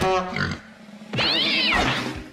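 A cartoon cat character's startled yowls. There is a short cry falling in pitch at the start, then about a second in a louder, longer cry that rises and falls.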